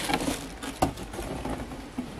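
A cardboard shipping box packed with tissue paper being picked up and moved: faint rustling and handling noise, with a sharp knock a little under a second in and another near the end.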